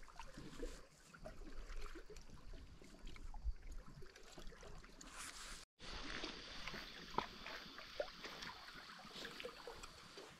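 Faint sea water lapping and trickling among shore rocks, with a few small scattered clicks. The sound drops out for an instant a little past halfway.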